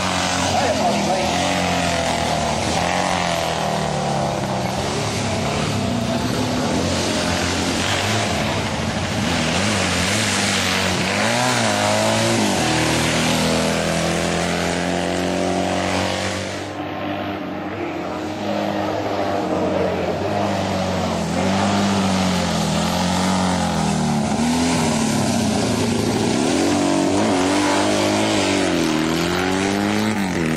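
Racing sidecar outfits' engines at full throttle, the pitch climbing through each gear and dropping at every shift and at braking as the machines go past, over and over. There is a brief lull in level a little past halfway.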